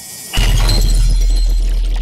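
News-channel logo sting sound effect: a rising whoosh that breaks, about a third of a second in, into a sudden loud hit with a bright, noisy top over a deep steady bass boom that slowly fades.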